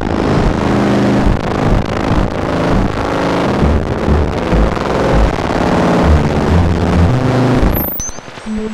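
BugBrand modular synthesizer playing a dense, rumbling patch: low tones stepping in pitch under a wash of noise. It cuts off abruptly just before the end, giving way to sparser separate notes.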